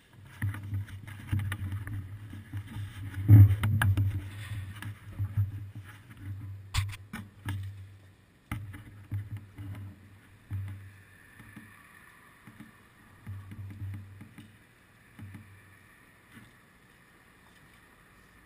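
Muffled, irregular bumps and rumbling carried through a seat-mounted camera's waterproof housing, with a few sharp clicks. It is loudest about three seconds in and dies away after about sixteen seconds.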